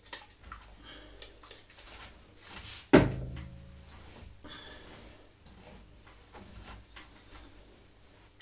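Hands rustling and scrunching the curly hair of a wig on a mannequin head, working in curl activator, with small scattered clicks. A single sharp knock about three seconds in, the loudest sound, followed by a short low ring.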